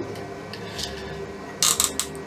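Felt-tip marker cap being pulled off, a few quick plastic clicks and scrapes near the end.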